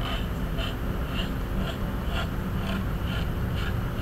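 X-Acto knife blade scraping the seam line off a wet, soft-fired porcelain greenware doll head, in short strokes about two a second, over a low steady background rumble.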